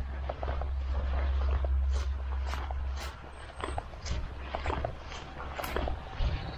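Footsteps of a person walking on a grassy woodland track, about two steps a second, over a steady low rumble that fades about halfway through.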